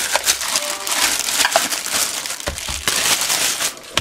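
Clear plastic bag crinkling and rustling as hands pull it off a plastic blender part, with scattered small clicks. It eases off shortly before the end.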